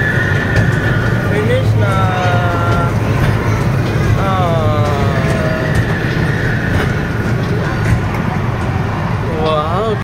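Steady low rumble of a small kiddie train ride moving along its track, with a few drawn-out, sliding voice calls over it, the last one rising near the end.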